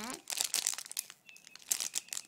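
Thin plastic packaging crinkling as a foam squishy toy is squeezed inside its bag, in two spells of rustling, one about half a second in and one near the end.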